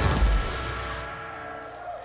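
Final hit of a heavy rock band, drum kit with crash cymbals and bass together, then the ringing chord and cymbals fading away over about a second and a half.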